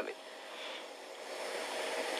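Steady hiss of background noise in a pause between a woman's words, swelling slightly toward the end.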